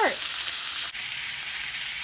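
Chicken breasts sizzling in butter in a hot non-stick pan: a steady frying hiss, with a brief break about a second in.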